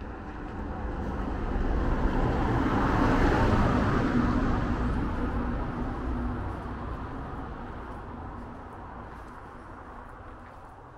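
A car driving past: its engine and tyre noise grows louder, peaks about three to four seconds in, then fades away.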